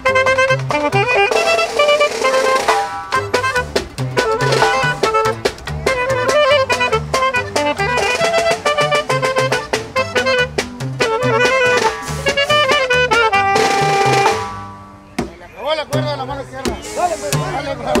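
Norteño band playing live: a melody line over a slapped tololoche (upright bass) whose strings click against the fingerboard on each beat, with bajo sexto and accordion. About fourteen and a half seconds in the music drops away abruptly, then the bass comes back in near the end.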